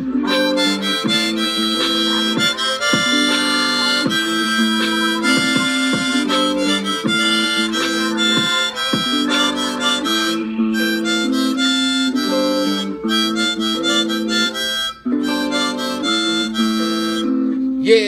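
Harmonica played with the hands cupped around it: a run of held notes and chords that step up and down, with one short break near the end.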